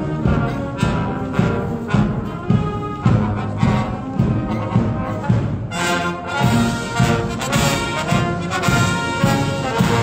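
British Army Guards marching band playing a march on trombones, trumpets and other brass over a steady drum beat. About six seconds in the band draws level and the brass grows louder and brighter.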